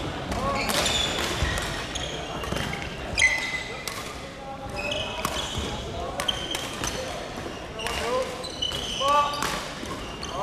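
Badminton doubles rally in a large echoing sports hall: repeated sharp racket strikes on the shuttlecock and short squeaks of court shoes on the wooden floor, over background voices.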